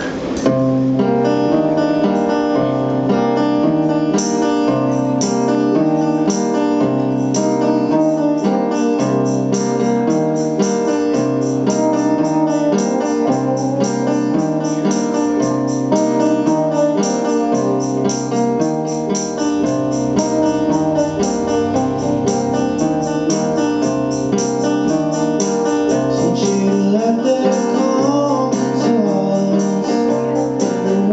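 Live acoustic guitar band playing a song's instrumental opening: guitars strummed in a steady rhythm over a repeating two-note bass line. Near the end a singing voice comes in.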